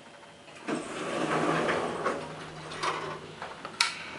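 ASEA traction elevator's sliding car doors opening on arrival: a click, then the doors run open with a steady low hum from the door motor, followed by a few knocks and a sharp click near the end.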